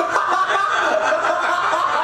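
People laughing and chuckling, with short snickers.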